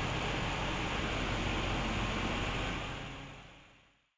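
Sub-level water cannon firing a high-pressure water jet (3,000 litres a minute at 10 bar) onto broken ore: a steady rushing hiss that fades out near the end.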